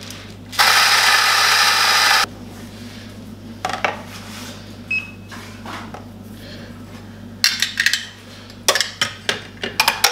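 Electric espresso burr grinder running for about a second and a half, grinding coffee beans, then cutting off suddenly. Later come scattered metallic knocks and two quick runs of clicks as the grinder's doser and the portafilter are handled.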